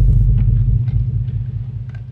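A deep, low bass rumble hits loud and then fades steadily away, with a few faint crackles over it.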